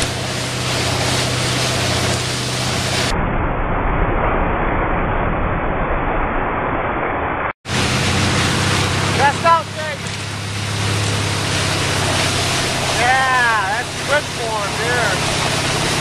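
Towboat engine running at speed with a steady low hum, under the hiss of water spray and rushing wind. The sound turns duller for a few seconds in the middle and cuts out for an instant about seven and a half seconds in.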